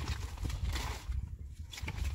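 Light scattered knocks and rustles of a plastic bag and small household items being handled, over a low steady rumble.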